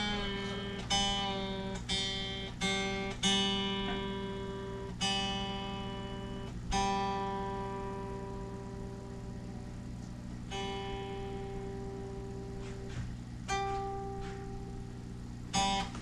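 Electric guitar's G string plucked as single notes, about eight times, each left to ring and fade, with a few seconds' pause near the middle. It is being checked for intonation after a saddle adjustment, and the note is still a little sharp.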